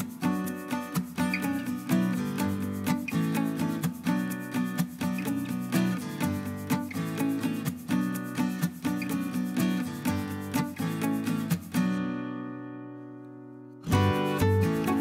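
Background music led by a plucked acoustic guitar in a steady rhythm; about twelve seconds in, a final chord rings and fades away.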